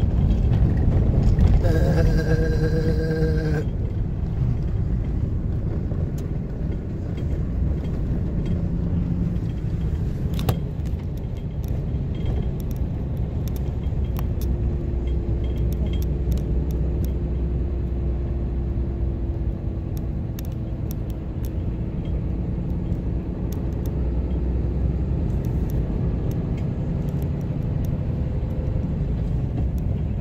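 Cabin sound of a Cummins turbo-diesel pickup driving on a gravel road: a steady low rumble of engine and tyres, with many small clicks and rattles from the gravel. A short pitched sound comes about two seconds in.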